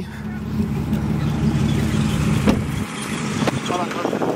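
A vehicle engine idling with a steady low hum that drops away about three seconds in.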